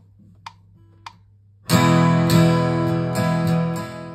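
GarageBand's metronome count-in, a few evenly spaced clicks, then about a second and a half in an acoustic guitar is strummed and its chord rings on, slowly fading.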